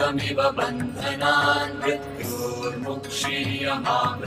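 Devotional background music with voices chanting a repeated refrain over a steady drone and percussion.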